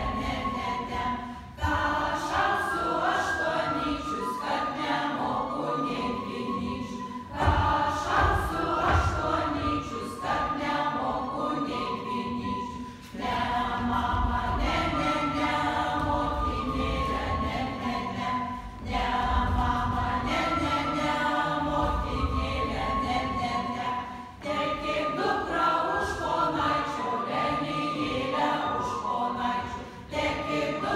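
A mixed group of children's and adults' voices singing a Lithuanian folk song unaccompanied, in phrases of about five to six seconds with short breaks between them.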